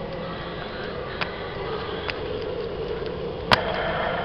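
Steady hum of an electric fan running, with a few light clicks and one sharper click about three and a half seconds in.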